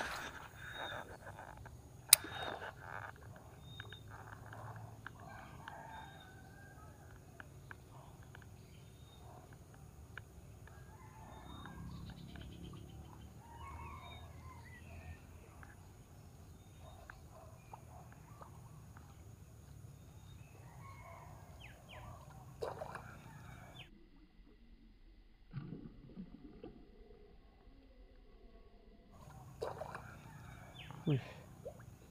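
Faint pond-side ambience with small birds calling repeatedly in the background, and a single sharp click about two seconds in. Near the end the background briefly drops out.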